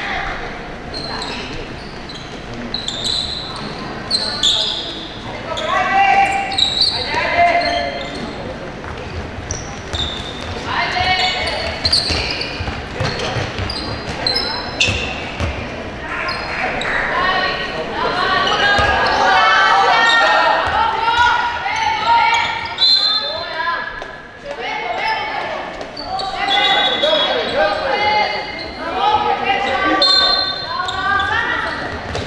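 A handball bouncing on a wooden sports-hall floor among players' shouts and calls, echoing in a large hall.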